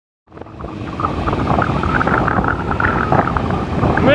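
Wind buffeting the microphone with road noise from a moving scooter, fading in after a brief silence and growing louder.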